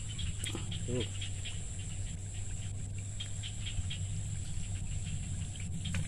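Insects chirping in quick, faint pulses over a steady low hum.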